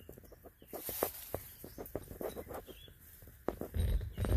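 A run of short turkey clucks, several a second. A loud low rumble comes in near the end.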